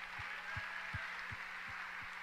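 Audience applause, with low thumps about two or three times a second from hands clapping close to a handheld microphone.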